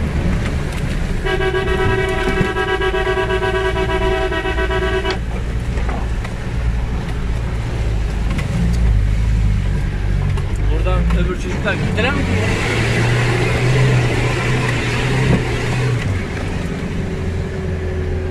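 Toyota Land Cruiser engine running under load, heard from inside the cab. A car horn sounds one steady blast of about four seconds near the start. Around twelve seconds in, the engine works harder for about three seconds under a loud rushing noise.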